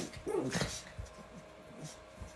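A dog giving a short whine during rough play, about half a second in.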